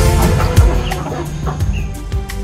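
Domestic chickens clucking over steady background music.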